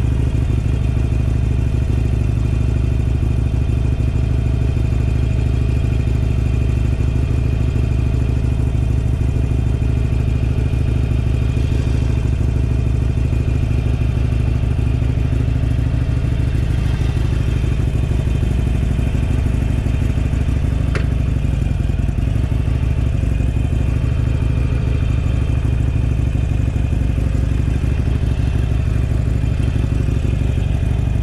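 Harley-Davidson Iron 883's air-cooled V-twin running steadily at idle, heard close up from the rider's seat.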